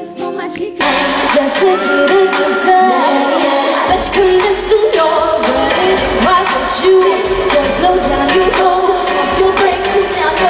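Female pop vocal group singing over a full backing track. A thin vocal-only passage gives way under a second in to the full track, and deep bass comes in about four seconds in.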